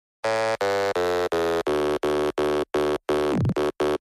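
Electronic dance music intro: a buzzy synth chord pulsing in even, chopped stabs about three times a second, starting about a quarter second in, with a quick falling sweep shortly before the end.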